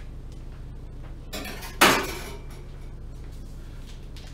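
A metal kitchen utensil clanks once, sharply, against hard dishware or metal about two seconds in, ringing briefly after a short rustle. A steady low hum runs underneath.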